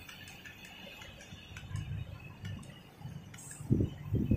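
A series of faint clicks from the Yamaha NMAX 2020's handlebar select button, pressed over and over to step the dashboard clock's hour forward.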